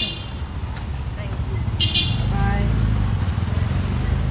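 Men's voices calling out over a low rumble of street traffic and a vehicle engine; the rumble grows louder about halfway through.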